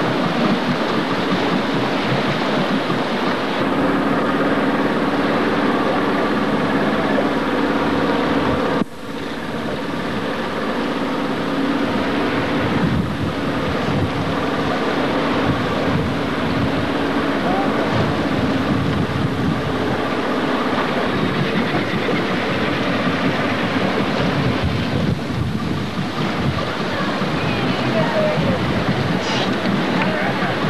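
A small tour boat's engine running steadily under wind and sea noise, with faint voices. The sound breaks off abruptly about nine seconds in and picks up again.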